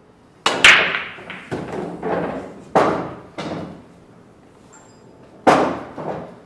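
A pool break shot: the cue cracks into the cue ball and the cue ball smashes into the rack, then the scattered balls clack against each other and the cushions in several further knocks, with one more sharp ball strike near the end.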